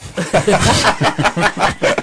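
A group of people laughing and talking over one another.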